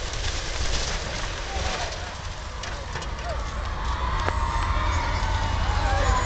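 A building section collapsing under demolition: a continuous crackling, clattering noise of falling rubble and timber, over a steady low rumble.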